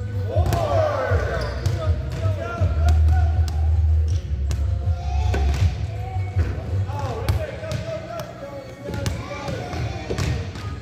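Basketballs bouncing on a hardwood gym floor, sharp irregular thuds with a hall echo, over voices or music in the background.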